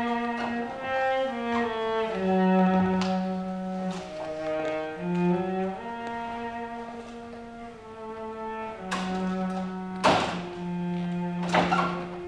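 Solo cello playing a slow melody of long bowed notes, one note at a time. A few short knocks cut across it in the last few seconds, the loudest about ten seconds in.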